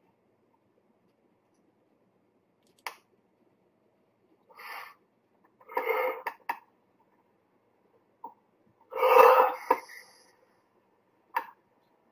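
A man clearing his throat and coughing in several short bursts, the loudest about nine seconds in. A few sharp single clicks fall in between.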